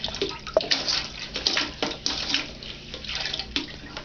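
A mop head on a toilet-cleaning wand swishing and splashing the water in a toilet bowl, in irregular strokes, while the bowl is swabbed.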